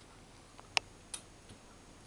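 Camera zoom button being pressed: three short sharp clicks, the loudest just under a second in and two fainter ones after.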